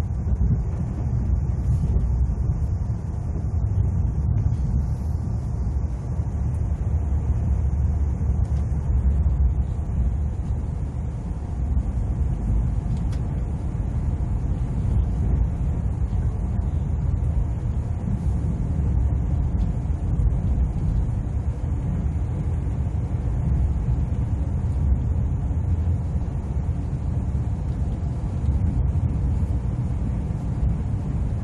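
Steady low rumble of an ITX-Saemaeul electric multiple-unit train running at speed, heard from inside the passenger car.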